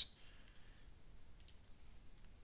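Faint computer mouse clicks: one about half a second in, then a quick pair about a second and a half in.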